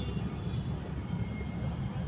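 Steady low rumble of a moving motorcycle, with road and engine noise mixed with wind on the microphone, at an even level.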